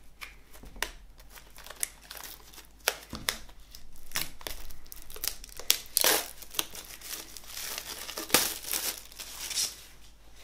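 Plastic shrink wrap being torn and peeled off a boxed album, a run of sharp crinkles and crackles that grows busier and louder in the second half.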